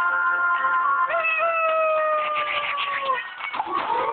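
Children's game music and cartoon sound effects: a held chord, then a long tone that slides slowly downward for about two seconds. A burst of crackly, sparkly clicks comes near the end as a gift box pops open.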